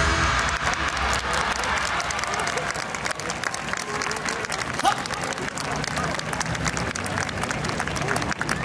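A large crowd applauding, with a few voices heard through the clapping. The backing music stops right at the start.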